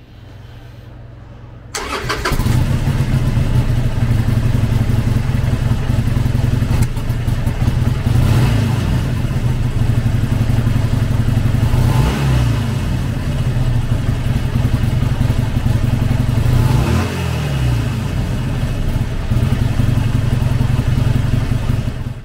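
A 2018 Harley-Davidson Sportster Forty-Eight Special's 1200 cc air-cooled V-twin starts up about two seconds in and settles into a steady idle. It is revved briefly three times, each blip rising and falling in pitch.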